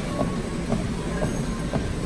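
Precor treadmill running, with footfalls thudding on the moving belt about twice a second over the steady noise of the belt and motor.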